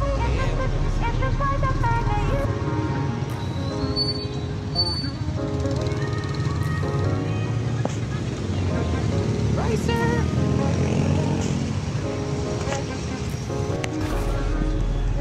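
A background song with a singing voice, over the sound of street and motorcycle traffic.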